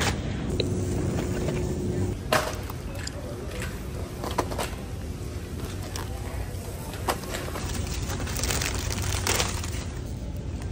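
Grocery-store sounds: a shopping cart rolling with a steady low rumble, and a few sharp knocks and crinkles as packaged groceries are taken off the shelves and handled.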